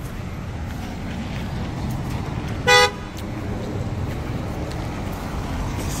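A single short car horn beep about halfway through, over steady street traffic noise.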